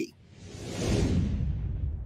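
A whoosh sound effect for an animated graphic transition: a rush of noise that swells to a peak about a second in and then fades away, with a low rumble underneath.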